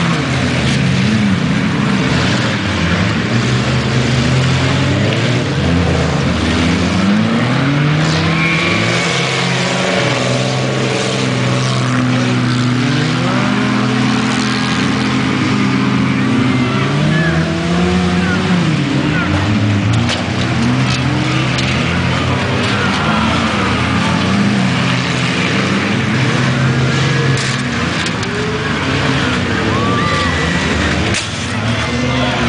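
Engines of several compact demolition-derby cars revving on a dirt track, their pitches rising and falling and overlapping as the cars accelerate, back off and push against each other.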